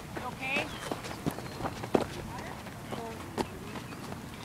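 Indistinct voices with several sharp clicks and knocks, the loudest about two seconds in.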